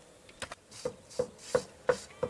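A mason's trowel scraping and working mortar on a board in quick, even strokes, about three a second, each with a short metallic ring. It starts about half a second in.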